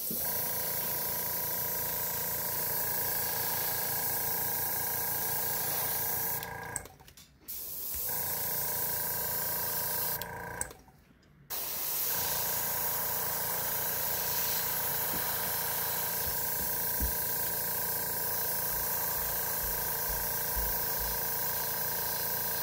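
Iwata gravity-feed airbrush spraying paint: a steady hiss of air with a thin whine in it. The trigger is let off twice, for a second or so each time, about a third and about half of the way through.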